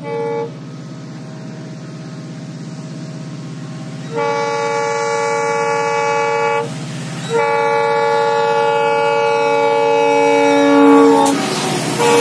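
Indian Railways WDP-4D diesel locomotive approaching with a steady low engine drone, getting louder, and sounding its air horn: a short toot at the start, then two long blasts, the second about four seconds long and dropping in pitch at its end as the locomotive draws level.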